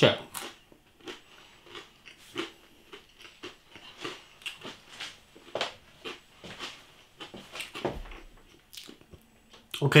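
A person chewing a mouthful of pizza, with soft irregular mouth clicks and smacks.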